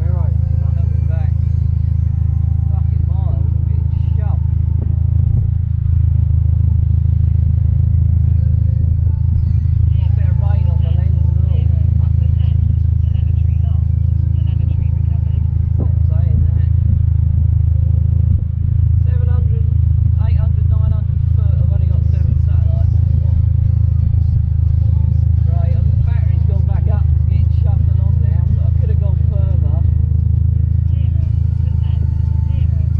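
A loud, steady low rumble throughout, with indistinct voices coming and going over it.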